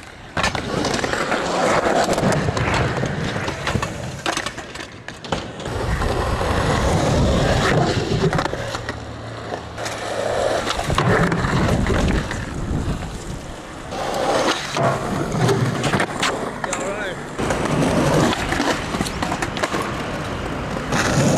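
Skateboard wheels rolling on concrete and wooden ramps, with sharp clacks of the board popping and landing, over several short runs.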